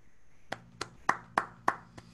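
One person clapping five times, about three claps a second, applause at the end of a presentation.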